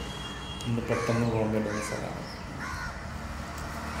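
Crows cawing a few times, mixed with a man's voice.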